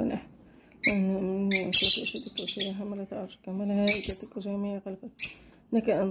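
A voice chanting Arabic evening supplications in a melodic style, with long held notes and short pauses between phrases. Brief high chirps and squawks, like bird calls, come through about a second, two seconds and four seconds in.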